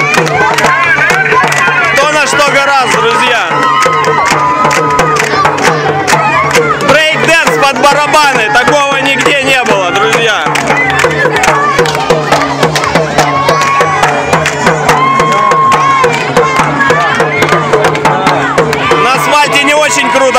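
Street parade drumming, rapid beats on marching drums with music, over crowd voices and chatter.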